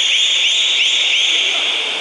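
A whistle blown in a quick run of short, high blasts, about three a second, that stops shortly before the end.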